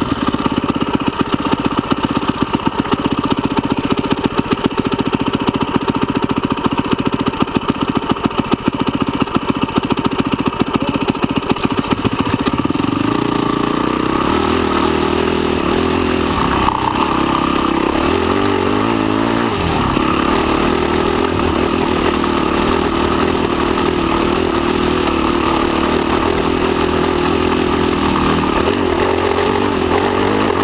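Off-road enduro motorcycle engine heard close up while riding a trail: it runs low and choppy, pulsing rapidly, for about the first twelve seconds, then pulls at higher, steadier revs that rise and fall with the throttle.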